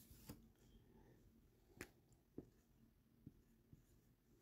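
Near silence with a handful of faint, sharp clicks and taps from handling a sheet of paper and a felt-tip marker; the loudest click comes a little under two seconds in.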